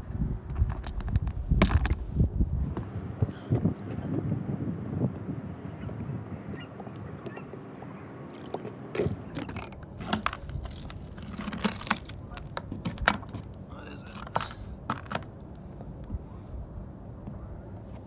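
Wind buffeting the microphone, strongest in the first few seconds, with scattered sharp knocks and clicks as a fishing magnet snagged on a chunk of metal is worked free and hauled up.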